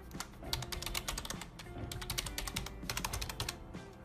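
Computer keyboard being typed on: a quick run of keystrokes as a password is entered, over quiet background music.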